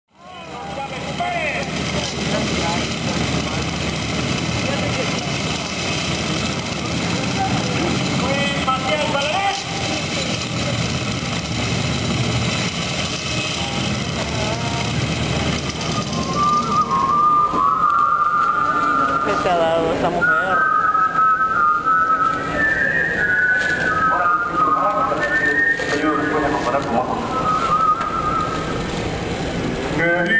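Soundtrack of an old black-and-white film: a dense, rumbling noise fills the first half, then a little past halfway a whistled tune comes in, rising and falling, with voices behind it.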